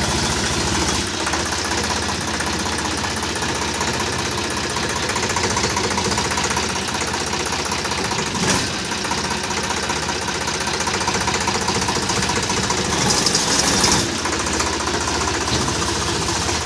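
Sonalika DI-47 RX tractor's diesel engine running steadily, with a brief hiss about thirteen seconds in.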